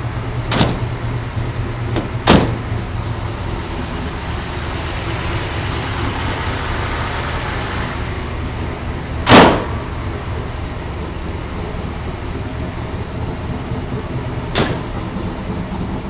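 A 1955 Chevrolet 210's 383 stroker small-block V8 idling steadily: a smooth, even idle. Over it come sharp thumps of the car's panels being shut. There is a door shutting about half a second in and another knock about two seconds in. The loudest is a heavier slam of the hood about nine seconds in, and a lighter thump comes near the end.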